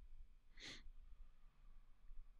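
Near silence with faint room hum, broken by one short breath from the person at the microphone, about half a second in.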